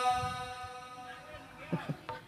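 A singer's long held note, amplified through the PA, dies away at the start of a stambul phrase break, leaving a quiet lull with a brief faint voice near the end.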